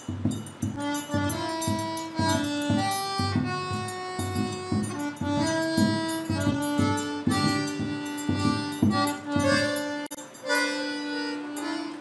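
A forró trio playing: an accordion carries the melody in held notes over a steady beat of zabumba drum and triangle. The drum drops out about ten seconds in, leaving the accordion nearly alone.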